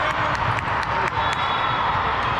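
Crowd noise in a large indoor sports hall: many voices at once, with scattered sharp claps and knocks throughout.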